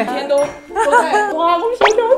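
Mostly speech: women talking animatedly in Mandarin. Near the end comes a quick rising glide, like a whistle.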